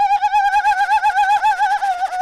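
Improvised music: one sustained high tone with a quick, even vibrato, dipping slightly in pitch near the end.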